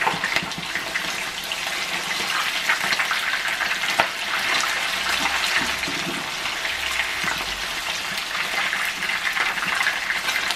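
Rohu fish steaks shallow-frying in hot oil in a nonstick pan, sizzling and crackling steadily, with a wooden spatula working among the pieces to turn them and one sharp tap about four seconds in.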